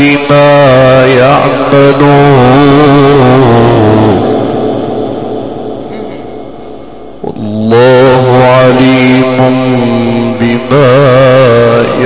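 A man reciting the Quran in the melodic Egyptian mujawwad style: long held notes with wavering ornaments. The phrase fades away a little after the first third, there is a pause of about three seconds, and a new long ornamented phrase begins about seven and a half seconds in.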